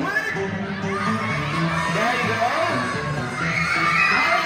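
A group of children shouting and cheering over background music with steady low notes; the shouting grows louder near the end.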